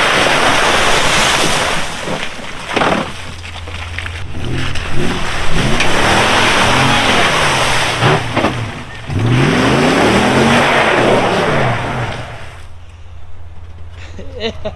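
A rush of splashing mud opens the clip. Then a V8 SUV engine, a Toyota 4Runner's 4.7 L V8, is revved up and down again and again from about four seconds in until about twelve seconds, with a loud noisy rush of tires spinning for grip. The truck is struggling on slick mud over ice.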